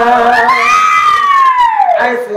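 A singer's loud held high note that climbs for about a second and then slides down in pitch.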